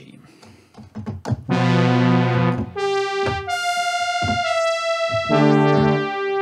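Roland Zenology Pro software synthesizer playing a self-made patch through a reverb plugin. After about a second and a half of quiet with a few faint clicks, a sustained chord comes in, followed by single held notes that step in pitch above held chords.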